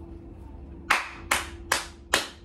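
One person clapping: three sharp, evenly spaced hand claps starting about a second in, a little under half a second apart.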